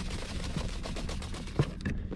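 Dry fish-fry batter mix being shaken in a closed plastic food container: a rapid, dense rattling and swishing of the powder and lid, with a couple of sharper knocks near the end.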